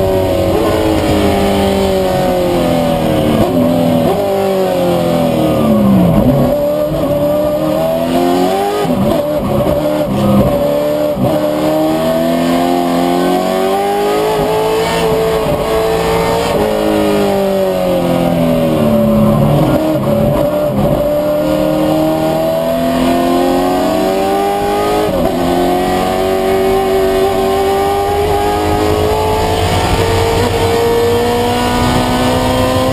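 In-car sound of a 1960s Ford Mustang race car's engine at racing pace, its revs repeatedly climbing through the gears and falling back. The engine note drops sharply about six seconds in and again around twenty seconds in, then climbs again.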